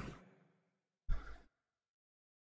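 A person's breath into a close microphone: an exhale fading out at the start, then one short sigh about a second in.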